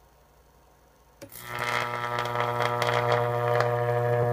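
Unballasted microwave oven transformer drawing a high-voltage arc between a steel rod and a copper tube. The transformer hums faintly, then about a second in the arc strikes with a snap and runs as a loud, steady, deep electrical buzz with crackling.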